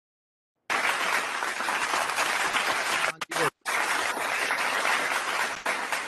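Recorded applause sound effect, a crowd clapping steadily, played over a video call's screen share. It starts abruptly about a second in and cuts out briefly twice a little past the middle.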